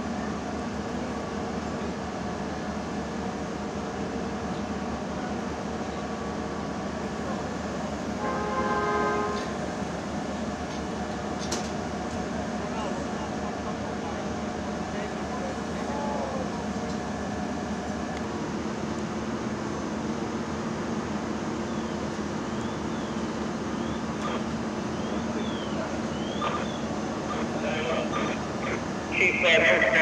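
Fire apparatus diesel engines running steadily, a constant drone with several steady tones in it; a brief, louder tonal sound comes about eight seconds in.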